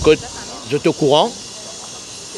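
A man speaking French in short phrases, with a steady high hiss underneath.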